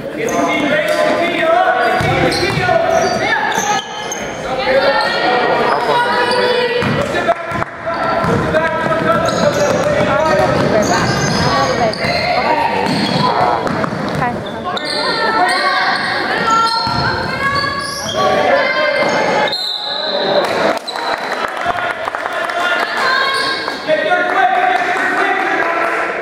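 Basketball game on a hardwood gym court: the ball bounces as it is dribbled, with voices calling and shouting over it throughout.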